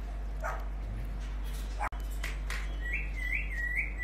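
A few short, separate animal yips, then a high wavering whine in the last second, over a steady low electrical hum.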